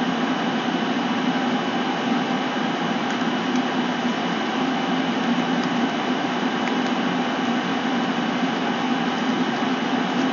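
Steady background noise: an even hiss with a low hum and a faint high whine.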